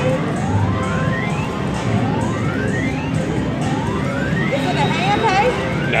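Video poker machine's win meter counting up a royal flush payout: a rising electronic sweep repeats about once a second as the credits tally, over the steady hubbub of a casino floor.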